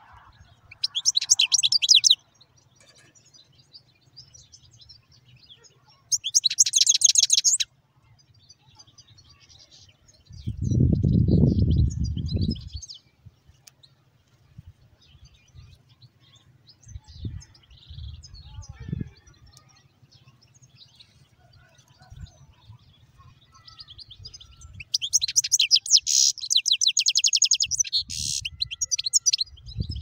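Caged finches, a European goldfinch and a canary, singing in short bursts of fast, high trilling: about a second in, again around six seconds in, and a longer run from about 25 seconds in. A loud low rumble lasting about two seconds comes around ten seconds in.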